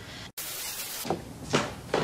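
Quiet indoor room tone with a few soft knocks or clicks, broken by a sudden momentary dropout where the looped clip is spliced.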